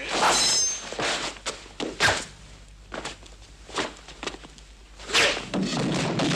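Film fight-scene sound effects: a string of thuds, blows and scuffles, with a sharp hit about two seconds in and a heavier clash near the end.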